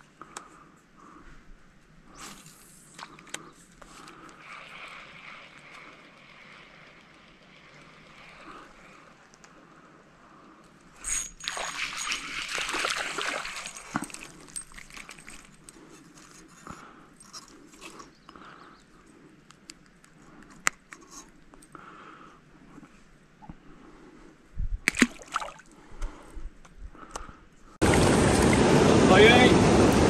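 Faint, quiet pond-side background with a few small handling noises and a louder rustling burst about eleven seconds in. Near the end it gives way suddenly to loud, steady rushing water from a dam spillway's turbulent outflow.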